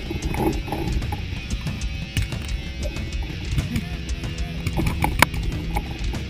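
Rock music with guitar, laid over the game audio, with scattered short sharp clicks and cracks; the loudest crack comes about five seconds in.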